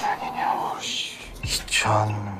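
Whispered speech, with a man's voice starting near the end.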